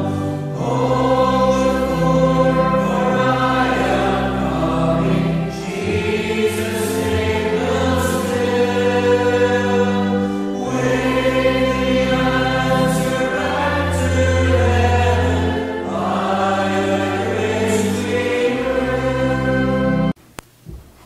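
Slow choral music: a choir singing sustained chords that change every second or two, cutting off suddenly at the very end.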